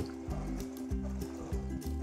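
Background music over water being poured from a bucket into a plankton net and trickling out of the net into a pond.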